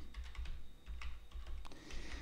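Computer keyboard keys typed in a quick, even run of about eight keystrokes while a password is entered.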